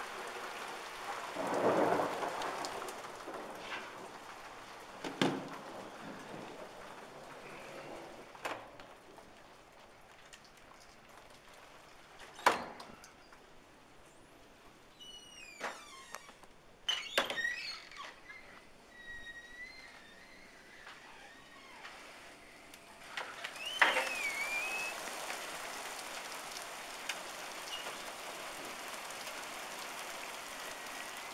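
Hail and rain falling steadily on paving and grass, with a heavy knock about two seconds in. The hiss thins in the middle, where a door handle and latch give several sharp clicks and squeaks. The hail hiss comes back strongly near the end.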